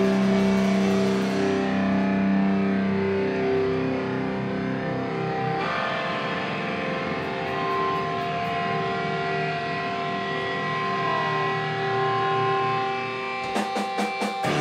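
Distorted electric guitars ring out in long held notes over amplifiers, with no drumming. The held notes change about six seconds in and bend slightly in pitch later. A quick run of sharp clicks comes near the end.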